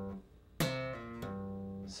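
Bass guitar playing a slow funk groove. A note stops short, then after a brief gap a sharply attacked note rings out, shifting pitch about a second in.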